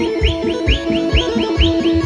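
Folk kolo dance music with held accordion tones and a steady low beat. A quick run of high, rising chirps, about six a second, sounds over the music.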